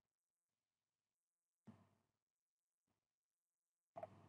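Near silence: faint line hiss, with one faint brief tick near the middle.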